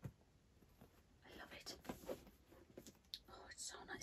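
Very quiet: a soft knock right at the start, then faint whispering and light handling sounds as a faux-leather mini backpack is turned in the hands.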